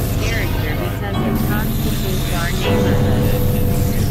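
Experimental synthesizer drone music, made on a Novation Supernova II and Korg microKORG XL. A continuous low droning tone sits under many short warbling pitch glides, and a steady higher tone comes in about two-thirds of the way through.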